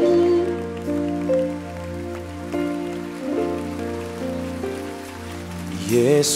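Slow live band music with no singing: held chords on sustained instruments over a steady low bass note, the notes changing about once a second. A singer's voice comes back in at the very end.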